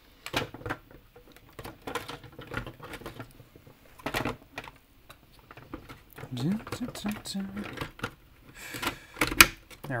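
Hard plastic parts clicking and knocking as the internal mechanism of a Nerf Rival Nemesis blaster is fitted back into its plastic shell, with a sharp, louder click near the end.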